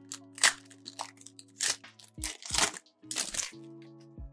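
Foil wrapper of an NBA Hoops trading-card pack being torn open and crinkled by hand, in about four short crackly bursts, over soft background music.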